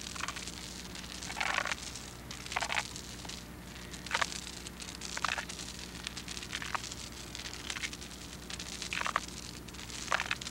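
Steel drag chain scraping and rattling across a concrete bridge deck in irregular strokes about a second apart. This is chain-drag sounding of the deck, where a hollow sound from the chain marks delaminated concrete that needs deck repair.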